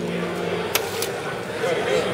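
Soda fountain tap pouring a carbonated drink into a small sample cup: a steady hiss of liquid and fizz, with two sharp clicks just under a second in.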